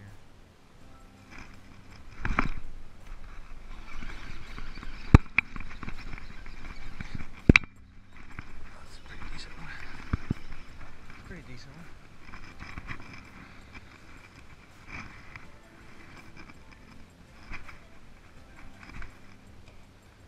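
Fishing rod and baitcasting reel being handled in a boat: a few sharp clicks and knocks, the two loudest about five and seven and a half seconds in.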